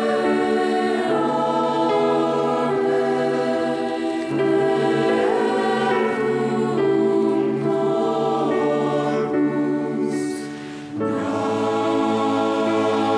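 Church choir singing a Communion hymn in sustained, slow-moving chords, with a brief break between phrases about ten seconds in.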